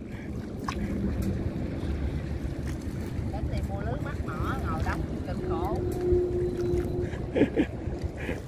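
Wind noise on the microphone over water splashing and washing around a small wooden boat being paddled across a river. Faint distant voices come in the middle, and there is a short laugh near the end.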